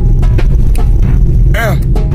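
Steady low rumble of a car's engine and tyres heard inside the moving car's cabin, with a brief voice about one and a half seconds in.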